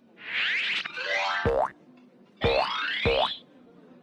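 Cartoon boing sound effects: two springy bursts whose pitch falls, each ending in low thuds.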